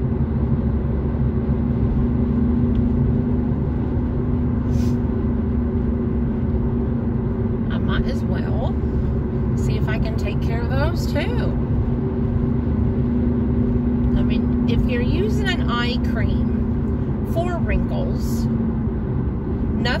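Car cabin noise while driving at road speed: steady road and engine noise with a low, constant drone that fades near the end.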